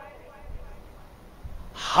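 A pause in a man's speech: faint room hiss, then a breath drawn in just before his voice resumes near the end.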